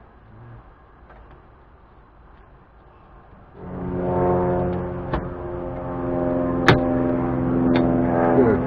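A steady, many-pitched droning hum sets in about three and a half seconds in and holds level, with three sharp taps over it.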